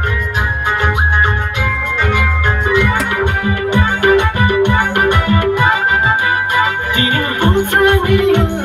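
Loud dance music played over a stage sound system: long held melody notes over a steady beat with heavy bass.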